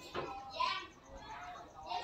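Faint children's voices in the background, coming and going in short stretches.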